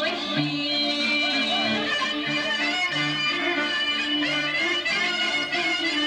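Live Sarakatsani folk dance music from a small band: an ornamented clarinet lead over electric keyboard (armonio) and electric guitar, with a repeating bass line keeping a steady dance beat.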